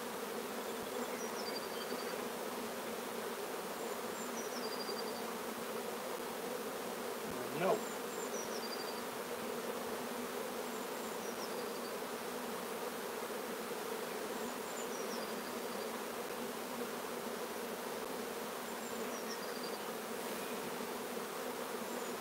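Honeybees swarming around an opened, crowded hive, humming steadily without let-up.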